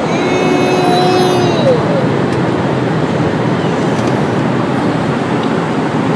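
Steady rushing noise of an airliner cabin in flight. Near the start a short held vocal sound from the toddler rises above it and falls in pitch as it ends.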